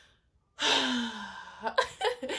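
A woman's long, heavy sigh starting about half a second in, breathy with a falling voice, followed near the end by a short burst of laughter.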